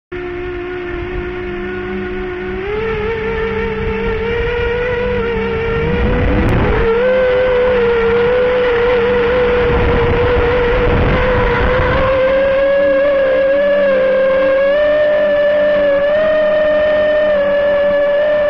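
Electric motors of a 5-inch FPV quadcopter whining with a steady pitch. The pitch steps up about three seconds in and sweeps up again about six seconds in as the throttle is raised for takeoff.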